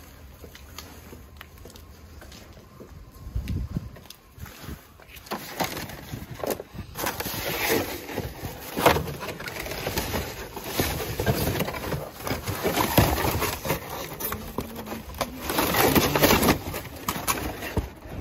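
Plastic trash bags and flattened cardboard boxes being shifted and rummaged through inside a metal dumpster: irregular rustling, crinkling and scraping. It is fairly quiet for the first few seconds, then louder and busier from about five seconds in.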